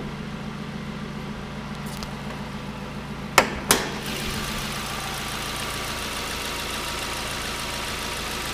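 2012 Suzuki SX4's 2.0-litre four-cylinder engine idling steadily. About three and a half seconds in come two sharp clicks from the hood catch as the hood is raised, and after that the engine is heard louder and clearer.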